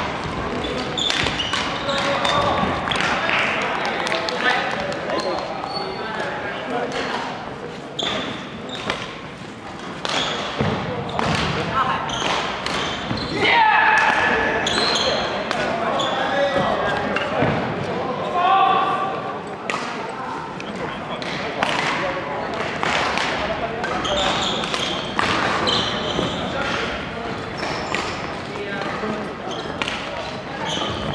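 Badminton play echoing in a large gym hall: sharp racket strikes on the shuttlecock, footfalls and brief shoe squeaks on the wooden court floor. Voices talk over it, most plainly about halfway through.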